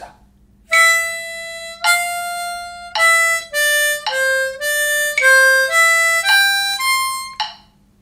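Diatonic harmonica playing a single-note rhythm exercise in quarter and eighth notes on blow and draw notes. It starts with two long notes, moves into quicker notes, and ends with a rising C major arpeggio on the 4, 5, 6 and 7 blow holes.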